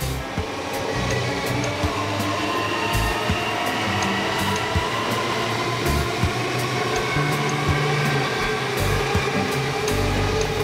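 Background music over the steady rush of an electric suburban train passing close by.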